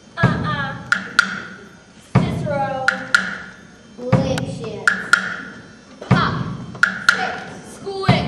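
Stage-musical number opening: a deep note hits about every two seconds, each followed by a pair of sharp, woodblock-like clicks, with short voice phrases between the hits.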